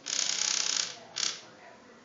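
Small vibration motor in a proximity-warning prototype, rattling in fast pulses for about a second, then one short buzz. The fast pulsing is the warning that a hand is close to the proximity sensor.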